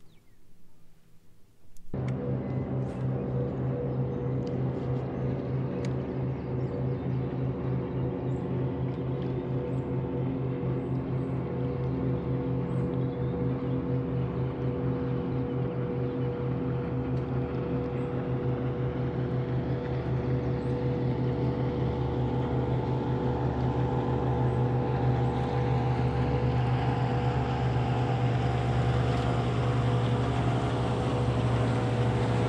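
A bass boat's motor running steadily: a low, even drone that starts about two seconds in and grows slightly louder toward the end.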